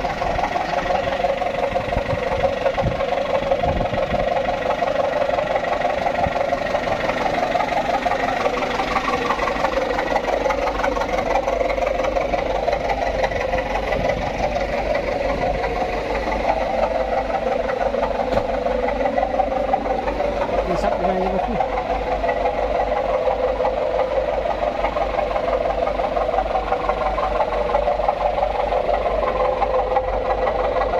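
A small truck's engine running steadily, with people's voices mixed in.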